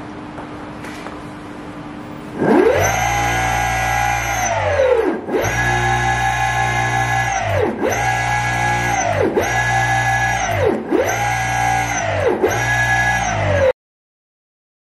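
Brushless electric motors on a test bench whining as they are throttled up and back down six times from about two and a half seconds in: each time the pitch rises quickly, holds steady, then falls away. Before the first run there is only a faint steady hum, and the sound cuts off suddenly just before the end.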